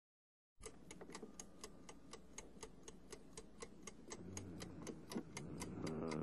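Opening of a film score's main-title theme: a steady clock-like ticking, about four ticks a second, over a low hum, starting about half a second in. Low sustained tones fade in a little past the middle and slowly grow louder.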